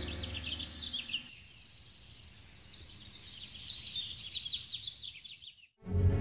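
Many small birds chirping in quick, high calls, while background music fades out over the first second. The chirping cuts off abruptly just before the end.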